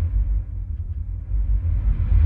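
Deep, steady bass rumble of a logo-animation sound effect, dipping a little in the middle and swelling again near the end.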